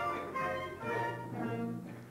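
Live instrumental music from a small orchestra accompanying a stage show, with a low note held through the second half before the music thins out.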